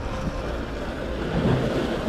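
Wind blowing across the microphone: a steady noisy rush, a little stronger about one and a half seconds in.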